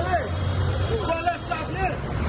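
A man shouting in a raised, strained voice over crowd chatter, with a steady low rumble underneath.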